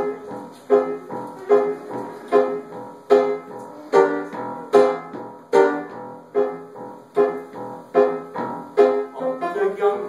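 Upright piano played solo: a chord struck about every 0.8 seconds with lighter notes between, each chord ringing and fading. The figure quickens near the end.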